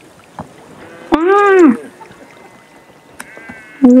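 A child's voice gives one drawn-out cry about a second in, its pitch rising and then falling over about half a second, with a few faint clicks around it; near the end comes a short grunted 'ugh'.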